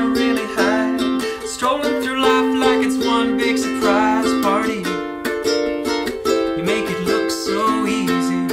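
Koaloha Opio long-neck concert ukulele strummed in a steady rhythm of chords, with a man singing over it for roughly the first five seconds.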